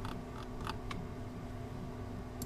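About five light clicks from a computer mouse in the first second, as the view is zoomed out, over a low steady hum of room tone.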